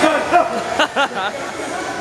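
Men's voices: a run of short, pitched vocal sounds with no clear words in the first second or so, then quieter background voices.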